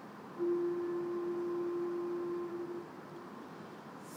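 A single steady note held for about two and a half seconds, clean and nearly pure in tone: the starting pitch given to an unaccompanied choir just before it sings.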